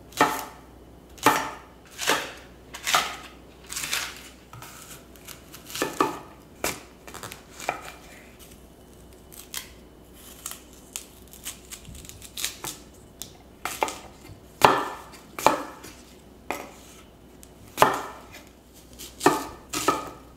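Chef's knife chopping shallot and onion on a wooden cutting board, single sharp strokes about once a second. There is a quieter stretch of fewer, lighter cuts in the middle, and louder chops near the end.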